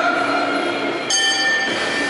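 Ring bell giving the start-of-round signal: a steady ringing tone, then about a second in a sudden, bright, high ring with many overtones that stops after about half a second.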